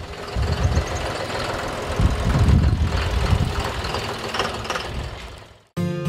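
John Deere utility tractor's diesel engine running as the tractor drives along, loudest about two to three seconds in, then fading out near the end.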